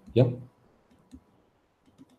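A short spoken "yep", then near quiet with a faint single click about a second in.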